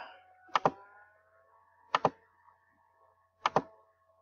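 Computer mouse button clicked three times, about a second and a half apart, each a quick press-and-release double click.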